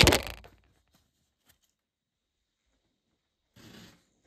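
Rustling and scraping of the phone being handled against its microphone, dying away within the first half second. Then near silence until a shorter rustle near the end.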